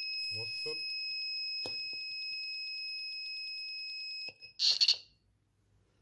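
Piezo buzzer on a TP4056 lithium charger module sounding a steady high-pitched alarm tone. It is driven from the module's blue charge-complete LED, which is lit because no battery is connected. About four seconds in the tone cuts off as a lithium cell is pushed into its holder and charging starts, and a short loud scraping clatter comes as the cell seats, with a sharp click a little earlier.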